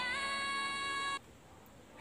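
A woman's solo singing voice holding one long note that slides slightly up at the start, then cuts off abruptly about a second in, leaving near silence.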